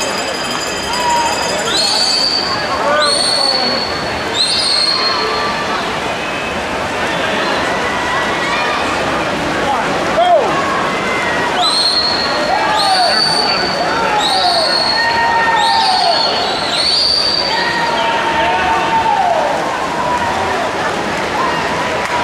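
Swim-meet spectators cheering and shouting during a race, with two runs of shrill rising calls, about one a second, cutting above the crowd.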